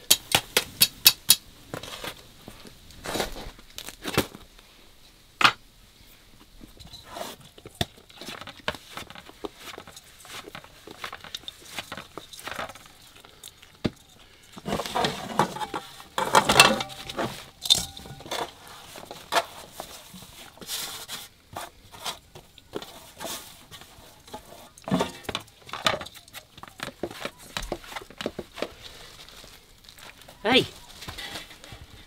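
Metal bowls and a large metal tray being handled: scattered clinks, knocks and scrapes, with a quick run of sharp clicks at the start and a denser clatter about halfway through.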